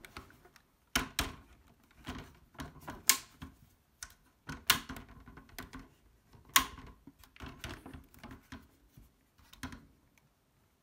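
Irregular plastic clicks and knocks from a laptop's casing and power plug being handled, with a sharp click about three seconds in and the loudest one a little past halfway.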